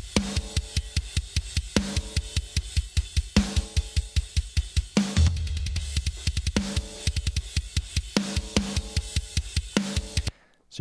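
Metal drum kit recording played back through heavy parallel bus compression (an SSL-style bus compressor at 10:1 with a slow attack and fast release), the snare transient pushed forward. Rapid kick drum hits run under cymbals, with a ringing snare hit about every second and a half and a deep low hit about five seconds in.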